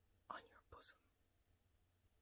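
A woman's brief whisper, breathy and unvoiced, about half a second long and ending in a short hiss, then near silence.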